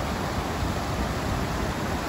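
Steady rush of a shallow mountain river running fast over rocks and small rapids.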